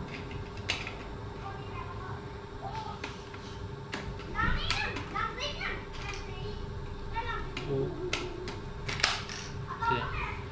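Children's voices in the background, loudest about halfway through and again near the end, over light clicks and rustling from a plastic RC transmitter being handled and unwrapped, with a faint steady hum.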